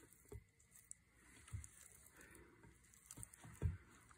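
Silicone spatula tossing oiled chunks of salami, cheese, olives and peppers in a glass bowl: faint wet squishes and a few light knocks, the loudest a little before the end.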